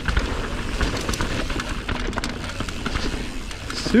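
Mountain bike ridden fast down a dirt singletrack: tyres rolling over dirt, with wind noise on the camera microphone and a run of small clicks and rattles from the bike.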